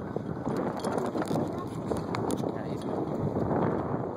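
Wind buffeting a phone microphone on a moving bicycle: a steady rush, with scattered clicks and knocks from the ride.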